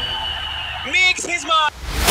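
A voice giving two short, excited cries with sharply rising and falling pitch, about a second in, during a lull in the background music. The music cuts back in at the end.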